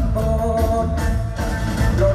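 Loud live mor lam band music through an outdoor stage sound system, with heavy bass and a held melodic line.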